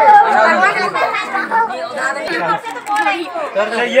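A crowd of children chattering all at once, many voices overlapping without a break.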